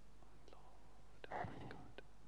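Quiet pause with a few faint clicks and a brief soft rustle about two-thirds of the way through.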